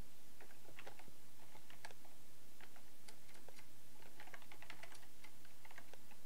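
Typing on a computer keyboard: a run of irregular key clicks, most rapid about four to five seconds in.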